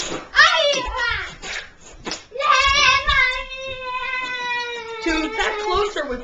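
A child's voice making wordless sounds: a short wavering call, then one long held cry that slowly falls in pitch for about two and a half seconds, with more vocalising near the end.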